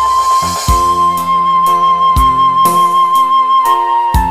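Arranger keyboard playing a Minang pop rhythm: a flute-like lead voice slides up into one long high note, held until near the end, then steps down. Underneath run drums at about two beats a second, bass and chords.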